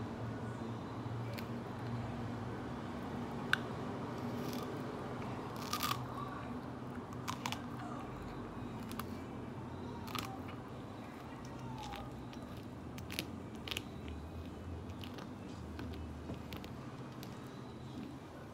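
Faint crunching and small crackling clicks as a yellow plastic screw-in lemon juicer spout is twisted down into a whole lemon, over a steady low hum.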